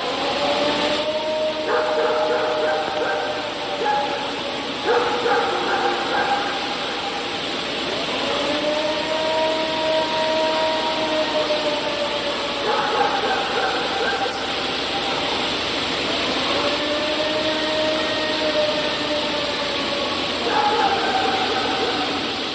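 Playback of the "Ohio Howl", a recording claimed as a Sasquatch call: three long drawn-out howls about eight seconds apart, each rising slightly and then falling, with shorter, higher wavering calls between them, over a steady hiss.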